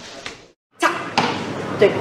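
A brief cut to silence, then sharp knocks start suddenly and loudly, with more knocks over the next second. Near the end a voice says "duì" ("right").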